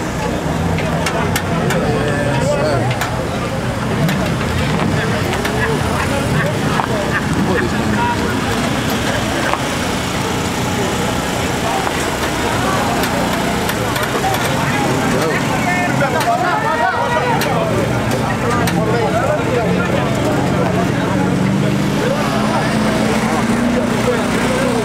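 A drag car's engine idling steadily, with crowd chatter all around; near the end the engine note grows a little louder and higher.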